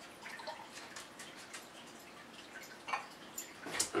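Thick, creamy liqueur poured from a glass mason jar into a glass tumbler: faint trickling and small drips, with a couple of light knocks near the end.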